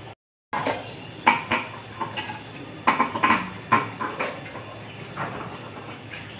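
Okra being sliced against a boti's upright blade, with pieces dropping into a steel bowl: a string of irregular sharp clicks and light metallic clinks.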